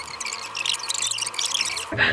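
Rapid crinkling and rustling of satin ribbon and cardboard gift boxes as the ribbons are pulled off and the lids lifted.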